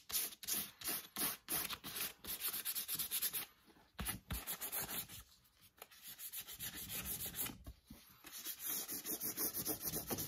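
Sandpaper rubbed by hand over a lizard-skin cowboy boot in quick back-and-forth strokes, about three a second, with a brief pause about three and a half seconds in and a softer stretch midway. The skin is being sanded lightly to bring the darkened sanded-black finish back to its original colour.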